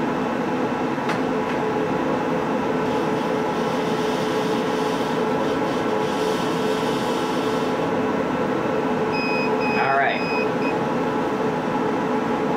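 Steady hum of a CO2 laser engraver's running support machines, its water chiller, air assist and exhaust fan, while the laser burns a test mark on a tumbler turning on the rotary. Near the end, a few short high tones and a brief rising squeak.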